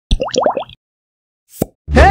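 Intro sound effects: a quick run of four rising cartoon 'bloop' sounds with a high tinkle on top, then a pause and a short whoosh. Background music with a low bass comes in right at the end.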